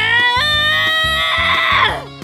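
A woman's long, high-pitched voice-acted cry, rising in pitch with a jump up about half a second in, then held until it breaks off near the end. It is a cartoon exclamation of delight at the first bite of food, over background music with a steady beat.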